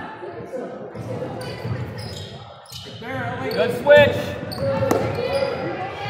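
A basketball bouncing on a hardwood gym floor during live play, echoing in a large gym, with indistinct voices calling out that are loudest about four seconds in.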